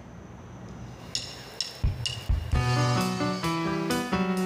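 A live band's song starting: after about a second of faint hiss come a few percussion hits and low drum thumps, then sustained keyboard chords over bass from about two and a half seconds in.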